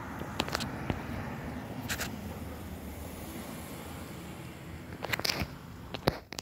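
Steady low rumble of outdoor background noise, with a few short clicks near the start, about two seconds in and again about five seconds in.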